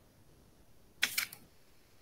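Near silence, with a brief cluster of two or three sharp clicks about a second in.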